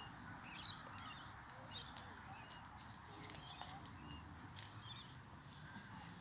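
Faint outdoor ambience with scattered short bird chirps through it.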